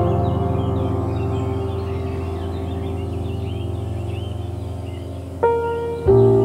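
Soft ambient background music with slowly fading sustained notes and faint bird chirps mixed in; a new chord is struck near the end.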